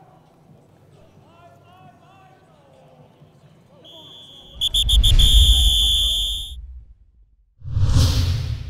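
A whistle blown at football practice: a few quick short blasts, then one long blast of about a second and a half, over heavy low rumble. Near the end comes a short rushing whoosh.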